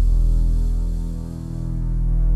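A low, steady droning hum from the film's score, swelling slightly and dipping about halfway through.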